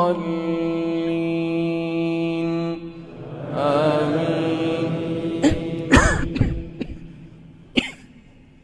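A man's voice holds one long chanted note of Quran recitation, which ends about three seconds in, then sings a shorter wavering phrase. In the last few seconds come a few sharp coughs and throat-clearing sounds, the loudest about six seconds in.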